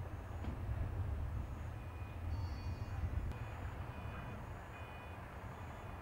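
Low, steady rumble of a heavy vehicle's engine, with a short high electronic beep repeating about every half second, like a reversing alarm.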